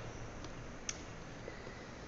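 Quiet room tone with a couple of faint, short clicks from plastic drawing instruments, a T-square and an adjustable set square, being handled and positioned on a drawing board.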